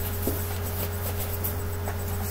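Faint rustling and soft clicks of papers or objects being handled, with a small knock about a quarter second in, over a steady low electrical hum.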